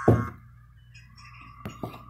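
Coffee-shop background sound effect: a short low thud right at the start, then quiet room tone with a faint steady tone and two light clicks like cups being set down near the end.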